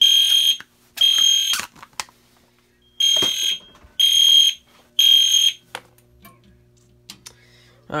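EST Genesis fire-alarm horn sounding in the temporal three-pulse pattern, set off by a smoke detector tripped with canned test smoke. Two blasts close one group, then after a pause a full group of three blasts comes about a second apart. The horn stops about six seconds in.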